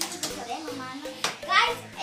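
A child's voice, with a short high-pitched call near the end and a sharp click about a second in.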